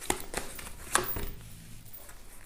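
A deck of tarot cards being shuffled and handled by hand: a few short card snaps and flicks, the sharpest about a second in.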